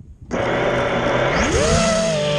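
FPV racing quadcopter's brushless motors with Ethix S3 propellers starting up suddenly about a third of a second in. Near the end the whine rises steeply in pitch as the throttle comes up for takeoff.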